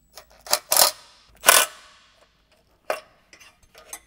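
Cordless impact driver tightening bolts on a fabricated sheet-metal intake manifold, in a few short bursts with sharp metallic clicks. The loudest burst comes about a second and a half in, and a last click follows near 3 seconds.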